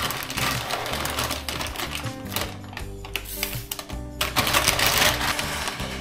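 A crinkly foil snack bag being handled and shaken out over a mixing bowl, crackling in two long spells. Background music with steady low notes plays underneath.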